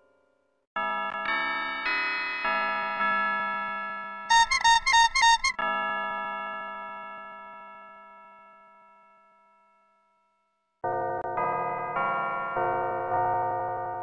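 A short keyboard logo jingle: held chords enter one after another, then a quick, loud run of bright pulsing high notes, and the sound fades away slowly. After a brief silence the same jingle starts again near the end.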